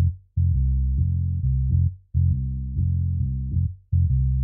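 Instrumental intro of a children's song: a plucked bass line playing short repeated phrases of low notes, each about a second and a half long, with brief breaks between them.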